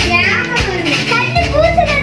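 Children's voices chattering and calling, with music playing underneath.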